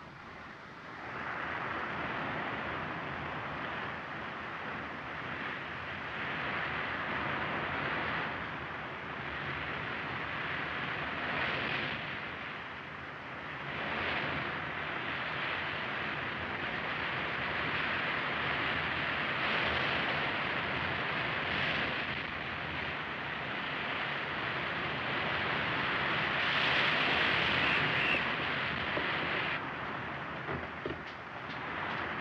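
Wind and heavy sea rushing against a ship, a steady roar of noise that swells and eases in gusts and is loudest near the end.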